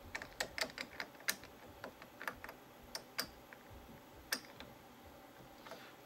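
Light, irregular metal clicks and taps of wrenches on a DeWalt 611 router's collet nut and shaft during a collet and bit change, bunched in the first few seconds with a last click past the middle.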